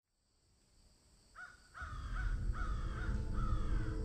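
A crow cawing, a run of about six caws at roughly two to three a second, starting about a second and a half in after a moment of silence, over a low rumble.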